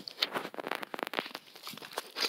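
Footsteps crunching through dry fallen leaves, an irregular run of crackles.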